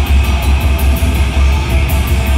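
Live heavy metal band playing: distorted electric guitars and bass over drums, with a heavy, booming low end and fast, regular cymbal hits.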